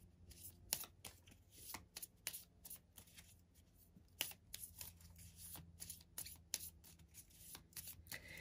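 Faint shuffling and handling of a deck of cards: a run of soft, irregular flicks and taps as a card is drawn for the reading.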